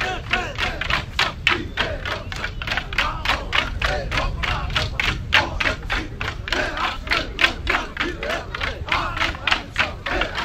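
Dance sticks clacking together in a Chuukese stick dance, a fast, even beat of about four strikes a second, with men's voices shouting and chanting along.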